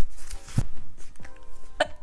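A woman giggling in a few short, breathy bursts, with faint background music under it.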